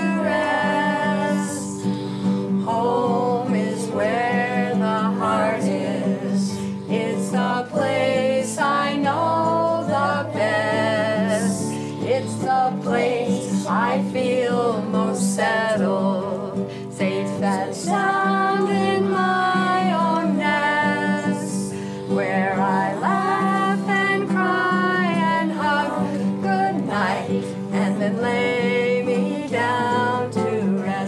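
A woman singing a slow song to her own strummed nylon-string classical guitar.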